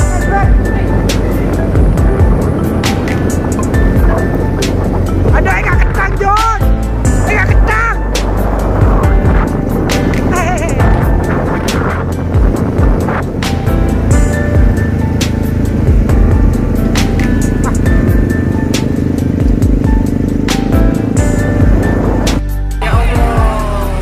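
Loud, rough wind buffeting on a phone microphone with a motorcycle engine running underneath, recorded while riding, with background music laid over it.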